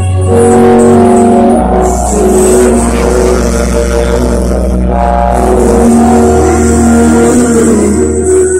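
Loud live concert music over a big stage sound system, heard from within the audience: held chords over a deep sustained bass note that drops lower about a second and a half in and comes back up near six seconds.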